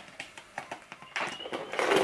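A plastic drinks bottle being handled, with a few light clicks and crinkles and then a louder rustle of plastic near the end.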